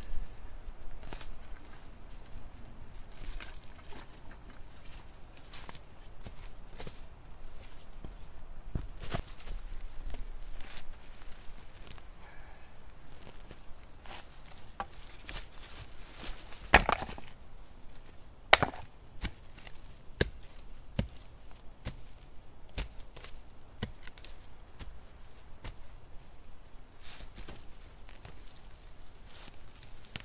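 Irregular knocks and scrapes of digging out a stony firepit by hand and with a long-handled digging tool, as stones knock together and the tool strikes into rocky ground. Two sharper strikes stand out a little past the middle.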